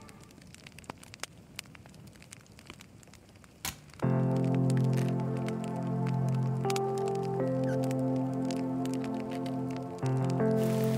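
Wood campfire crackling: scattered small pops and one sharper crack over a quiet background. About four seconds in, background music with long held chords comes in and stays louder than the fire.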